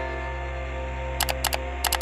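A sustained orchestral music chord slowly fades. Just past halfway, a run of sharp, dry clicking sound effects begins, coming in quick pairs like a camera shutter.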